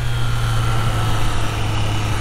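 Triumph Trident 660's inline three-cylinder engine running at a steady, even note while riding, with wind rush over the microphone.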